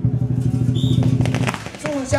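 Dragon-dance drumming: a fast, dense drum roll that stops about one and a half seconds in, followed by scattered sharp cracks.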